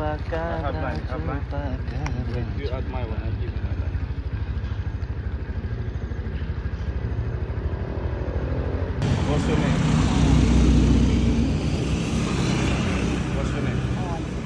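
A motorbike engine idling close by with a steady, even low chug, while people talk over it. Partway through, an edit brings in louder street noise.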